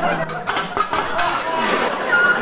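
Studio audience laughing.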